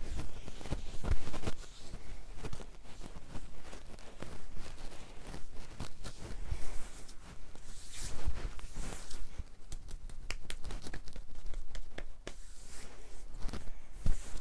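Hands massaging a person's back and arm through a cotton T-shirt: fabric rustling and rubbing, with irregular soft thumps.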